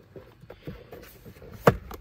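Plastic glove box being squeezed in at its sides, with faint rubbing and handling, then one sharp snap near the end as a side stop pops past the dash and the box drops down.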